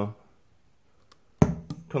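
A condenser microphone handled on its stand: one sharp thump about one and a half seconds in, then a few light knocks, after a quiet stretch.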